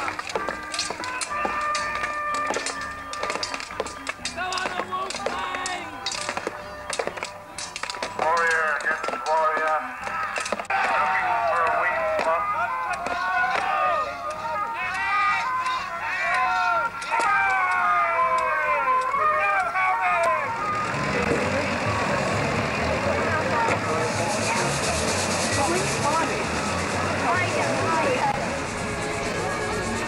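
Medieval re-enactment fight: sharp clashes of weapons on shields and men shouting. About twenty seconds in, it gives way abruptly to fairground music and crowd chatter.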